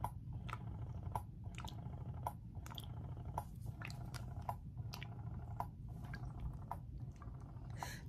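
Electric breast pump running: a steady low hum with short wet squishing clicks about twice a second as the suction cycles and milk sprays into the collection bottle.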